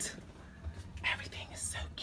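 A person whispering softly in short hissy bursts, over a low steady hum.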